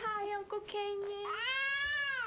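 A baby crying: a run of short, broken wails, then one long, high wail that rises and holds from just past the middle.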